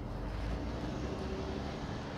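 Steady low rumble of distant engine noise, with a faint steady hum above it.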